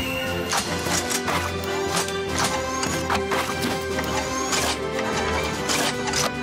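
Background music with a run of sharp mechanical clanks and whooshes: the sound effects of a cartoon police car transforming into a robot.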